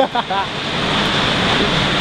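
Steady rushing wind noise on the microphone, following a brief spoken exclamation right at the start.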